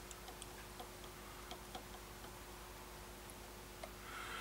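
Faint, irregular small clicks of an outside micrometer's thimble being turned and closed onto a turned steel part, over a faint steady hum.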